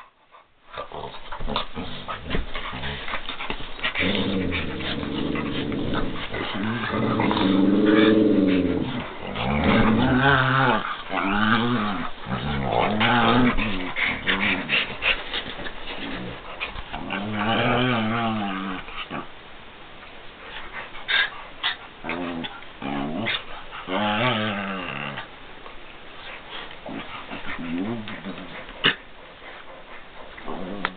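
Dogs growling in rough play, a run of growls that rise and fall in pitch, in clusters with scuffling between. They are loudest about eight to thirteen seconds in and die down near the end.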